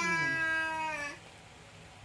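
A young child's long drawn-out vocal note, sliding slowly down in pitch and ending about a second in.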